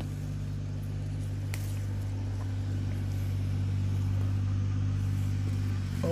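Steady low machine hum made of several fixed low tones, swelling slightly in the middle, with a faint click about one and a half seconds in.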